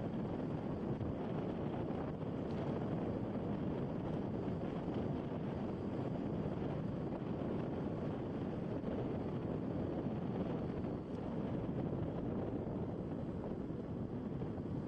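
Steady wind rush buffeting the microphone on a moving motor scooter, with the scooter's running and road noise blended underneath.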